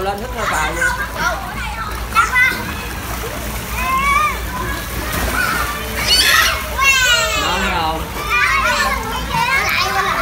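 Children talking and shouting in a swimming pool over splashing water, with a child's high falling squeal about seven seconds in.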